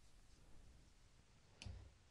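Near silence: room tone, with one short faint click about a second and a half in as the metal-taped conduit spear head is handled on a cutting mat.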